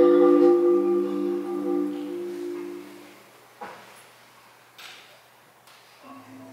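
Concert marimba holding a low chord of several sustained notes that fades away over about three seconds, followed by a near-quiet pause with a few faint knocks.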